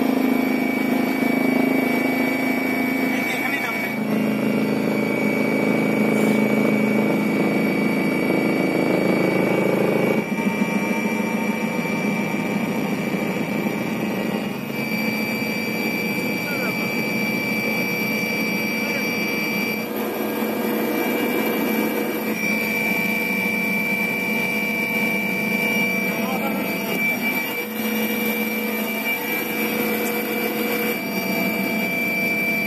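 Helicopter cabin noise as the aircraft comes in to land: a steady turbine whine with several constant high tones over a continuous engine and rotor drone.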